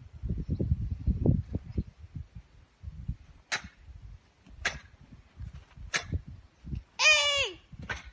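A girl's karate kata done with force: three short, sharp exhalations about a second apart as she strikes. Then, about seven seconds in, a loud kiai, a half-second shout falling in pitch, on the knee strike. Near the start there is low rustling of her steps on grass.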